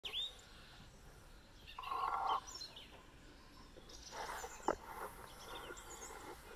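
Birds chirping on and off over a quiet outdoor background. There is a brief louder noise about two seconds in and a single sharp click a little before the five-second mark.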